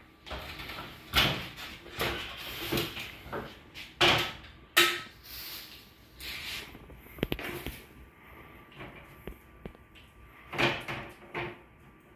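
Scattered knocks and clunks of painting gear being handled: a paintbrush on an extension pole and a metal paint can being moved and set down, with the loudest knocks about four and five seconds in.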